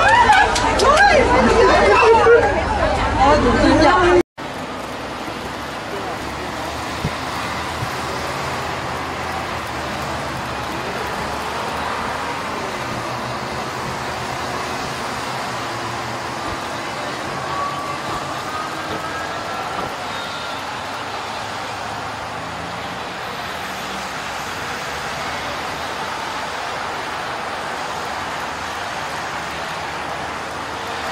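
Several people chattering close by for about four seconds, then an abrupt cut to steady street traffic noise with faint voices in it.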